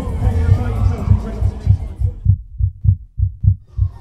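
Low, regular beats, about three or four a second, like a heartbeat or a kick drum in a soundtrack, under music and voices. About halfway through the music and voices drop away and the beats go on alone.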